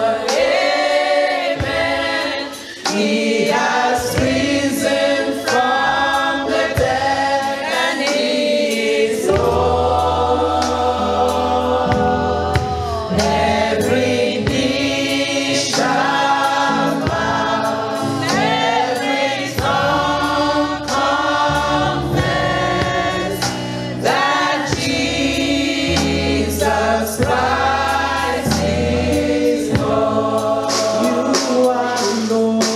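Gospel praise-and-worship song: a woman sings lead into a microphone, with other voices and instrumental accompaniment. A deep bass part comes in about ten seconds in.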